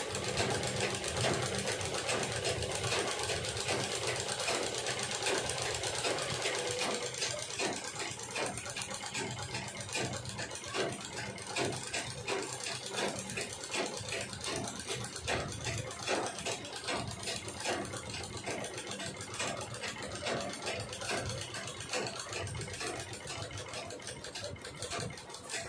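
Black Sandeep domestic sewing machine stitching steadily: a fast, even clatter of needle strokes as fabric is fed through.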